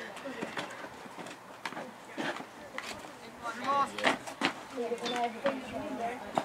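Indistinct talk from several spectators' voices, with a few short sharp knocks in between, the loudest about four seconds in.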